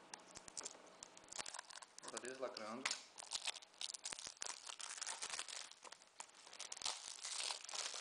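Plastic shrink-wrap being torn and peeled off a Blu-ray case: irregular crinkling and tearing crackles, densest in the second half.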